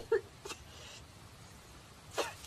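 A woman whimpering: a sharp catch of breath and a brief whimper right at the start, then a soft breath out.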